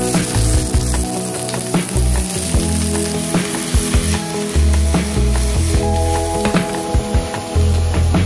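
Sliced onion and mushrooms searing in hot oil in a stainless steel frying pan: a loud, steady sizzle that starts suddenly the moment the onion hits the pan.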